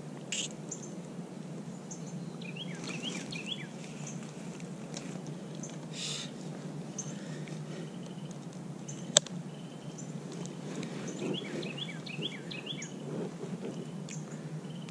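Small birds chirping, two series of quick falling notes, over a steady low background hum; a single sharp click about nine seconds in.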